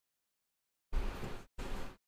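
Dead silence for about a second, then two short patches of faint hiss and low hum that switch on and off abruptly: a microphone's noise gate opening on background noise.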